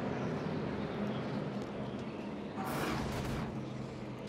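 Stock car V8 engine noise, low and steady, as the race runs slowly under caution, with a brief louder rush of noise about three seconds in.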